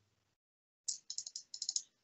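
Computer keyboard keys tapped in a quick run of about a dozen light clicks, starting about a second in after a gap of dead silence.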